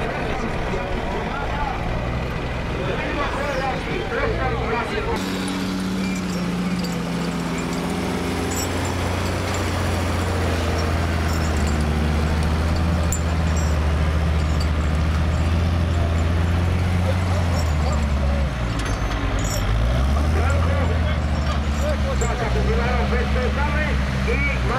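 Diesel engine of a forestry skidder working under load while it drags a log, a steady low note that dips about three-quarters of the way through and picks up again. Voices of bystanders are heard over engine noise during the first few seconds.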